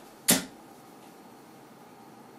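A steel-tip dart striking a bristle dartboard: one sharp thud about a third of a second in, landing near the top of the board beside the dart already there.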